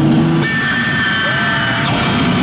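Electric bass guitar played loud through an amplifier in a live heavy-metal solo. It holds a low note, changes to higher sustained notes about half a second in, and slides in pitch near the end.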